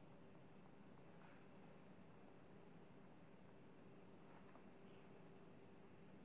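Near silence, with a faint, steady, high-pitched cricket trill running throughout.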